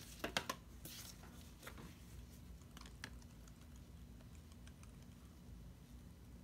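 Light clicks and taps of plastic paint squeeze bottles being handled: several in quick succession in the first second, a few scattered ones over the next two seconds, then only a faint steady hum.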